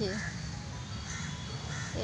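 A crow cawing: three short calls, the first near the start and two more about a second in and near the end, over a low steady rumble.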